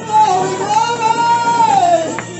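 A woman singing gospel into a microphone, amplified over the PA, holding one long note that slides down near the end.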